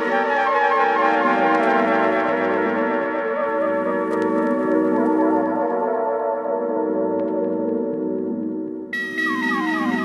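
Background music: sustained tones over a low drone, with falling glides in pitch. The higher layer fades out midway and cuts back in suddenly near the end.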